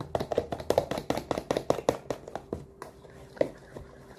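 Eggs being beaten by hand in a plastic container, the utensil clicking against its sides in a fast, even rhythm of about six strokes a second. The strokes stop about two and a half seconds in, with a single stroke later.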